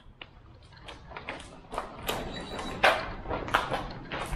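Walking footsteps on pavement mixed with the knocking rattle of a hand-pulled shopping trolley, about three knocks a second. They start faint and grow louder a little under two seconds in.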